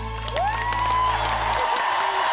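Applause and cheering as a song ends, with one voice whooping upward about a third of a second in. The music's last low held note stops about a second and a half in, and the clapping carries on.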